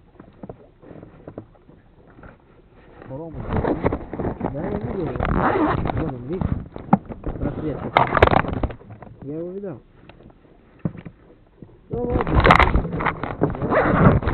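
Indistinct voices talking, beginning about three seconds in, breaking off around ten seconds and starting again near the end.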